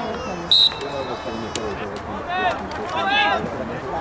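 Umpire's whistle: one short, sharp blast about half a second in, its tone trailing off within the next second. Players' shouts follow twice later on, with a few sharp clacks of hockey sticks on the ball.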